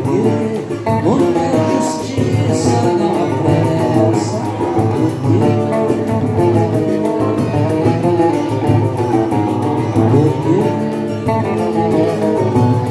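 Live acoustic ensemble music: an acoustic guitar and a cavaquinho played together, with plucked and strummed notes running steadily throughout.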